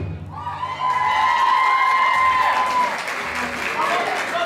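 Samba drumming breaks off right at the start, and the audience applauds and cheers, with one long shouted cheer held for about two and a half seconds.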